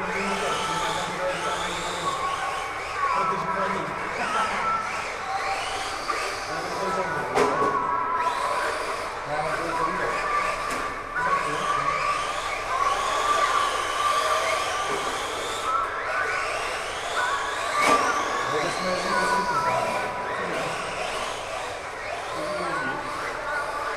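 Radio-controlled cars' motors whining, the pitch rising and falling over and over as the cars speed up and slow down around the track. Several whines overlap at times.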